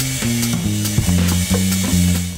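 Jazz band music: an electric bass playing a line that moves from note to note, over a steady, regular ticking from the drums.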